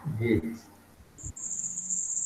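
A short spoken word, then from about a second in a steady high-pitched tone with a faint low hum beneath it, heard over a video-call audio line.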